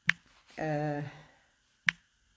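Typing on a smartphone's on-screen keyboard: two sharp key clicks, one near the start and one near the end, with a drawn-out vocal sound from the typist between them.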